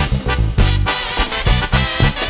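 Instrumental break of a Mexican corrido played by a brass-led regional band, with a regular bass beat and no singing.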